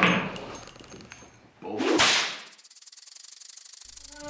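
Swishing whoosh sound effects. One hits at the start and fades away over about a second and a half. A second one swells up and cuts off sharply about two seconds in.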